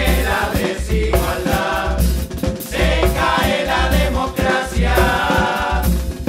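Murga chorus of several voices singing together in Spanish, with a low drum beat running underneath.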